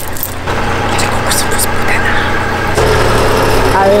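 Car engine running at idle, its low hum growing louder about three quarters of the way in, with a few hand claps in the first half.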